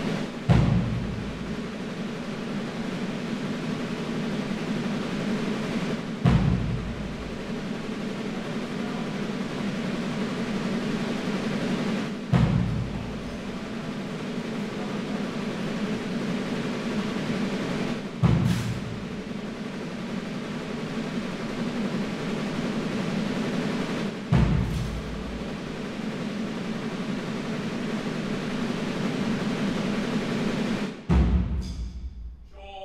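Slow, solemn band music: sustained low chords with a single deep drum stroke about every six seconds, five strokes in all.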